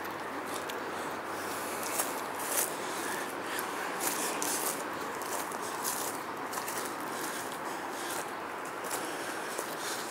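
Footsteps crunching irregularly through dry fallen leaves and grass, over a steady outdoor background noise.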